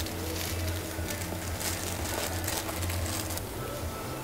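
Light rustling and handling of a small plastic packet and cardboard piston boxes as they are packed, over a steady low hum.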